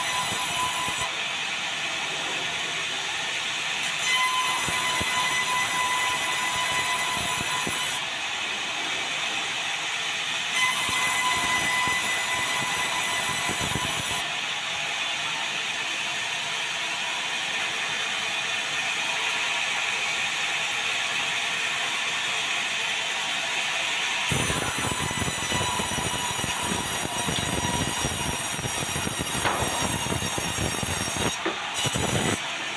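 Sawmill headrig saw running and cutting through a log fed on a rail carriage: a steady machine noise with a whine that stops and starts again several times as the cuts go through.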